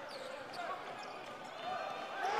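Live game sound on a basketball court: sneakers squeaking on the hardwood and the ball bouncing, with voices in the hall.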